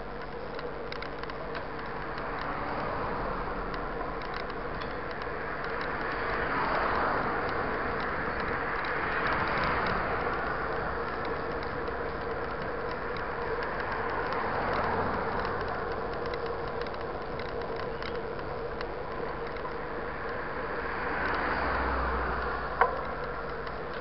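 Road traffic passing close by while cycling along a roadside bike lane: cars go by in several rising-and-falling swells over a steady background of road noise, with one sharp click near the end.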